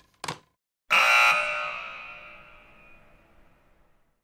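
A sudden loud ringing tone with several pitches at once, fading away over about three seconds, with a brief short sound just before it.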